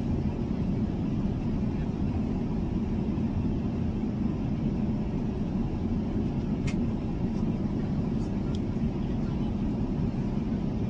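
Steady low rumble of road and engine noise inside a moving car's cabin, with a few faint clicks in the second half.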